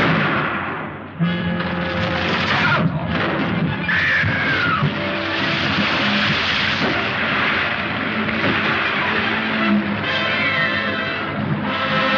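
Loud, dense orchestral film score with held notes and sliding phrases, surging in suddenly about a second in.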